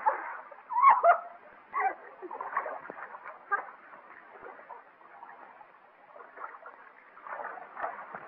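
Water splashing in a swimming pool, with a couple of short cries early on, over the hiss of an old film soundtrack.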